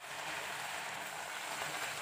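A puri deep-frying in hot oil in a kadhai: a steady sizzle that starts abruptly.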